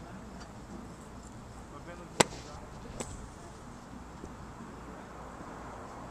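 Golf club striking a teed ball off a driving-range mat: one sharp crack a little over two seconds in, followed about a second later by a fainter click.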